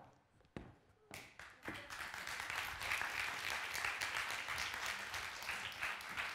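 A model's footsteps clicking on a runway, about two steps a second, then audience applause that starts about a second in, builds, and carries on over the steps.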